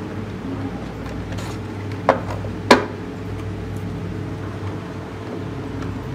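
Two sharp clicks, about half a second apart, from a clear plastic display case being handled as its cardboard sleeve comes off, over a steady low hum.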